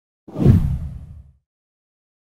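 A single whoosh transition sound effect with a deep low end, starting about a third of a second in and fading away by about a second and a half.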